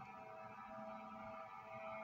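Faint steady drone of a few held tones, unchanging.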